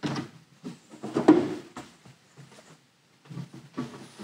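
Mounted print boards being slid off and onto a display stand: a few short scrapes and knocks of board against the stand, the loudest about a second in.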